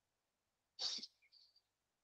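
A single short, sharp burst of noise about a second in, with a few fainter traces just after it, against near silence.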